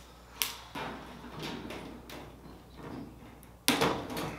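Stainless steel firewall sheet being worked into place against the aluminium fuselage by hand: a sharp click under half a second in, then scraping and rubbing of sheet metal, and a loud sharp metal clack near the end.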